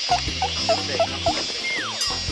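Background music with a comic sound effect laid over it: five short, quick pitched blips, about three a second, then a single descending slide-whistle tone near the end.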